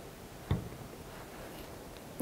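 Quiet room tone with one short click about half a second in.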